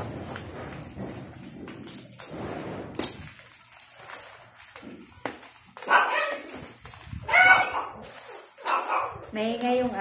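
Bubble-wrap packaging rustling and crinkling as it is pulled open, with a sharp click about three seconds in. From about six seconds in, a dog gives several short barks and whines.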